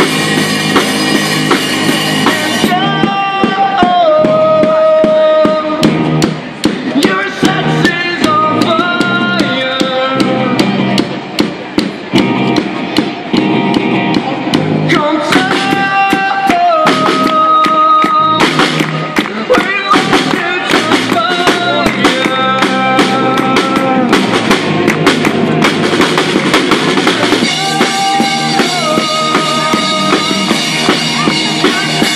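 Live rock music from a street band: electric guitars over a drum kit, played through small amplifiers, with a lead melody line bending between held notes over a steady beat.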